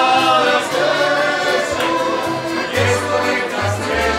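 Live folk band of men singing together in harmony over accordion, acoustic guitar, tamburicas and a plucked double bass, with the bass notes strongest in the second half.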